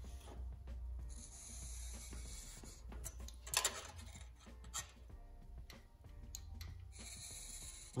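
Faint scraping and rubbing of a steel rule and paint marker against a steel truck frame while a plate outline is marked out, with a brief louder scrape about three and a half seconds in, over a low steady hum.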